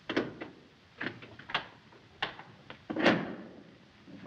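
Heavy riveted steel vault door being unlocked: a series of sharp metallic clicks and clunks from its lock and latch, about six in four seconds, the loudest and longest near the end.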